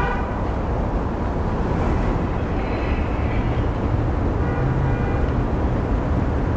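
City street traffic noise: a steady low rumble of vehicles, with a faint whine through the middle.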